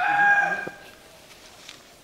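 Rooster crowing: the long held final note of its crow, which stops less than a second in.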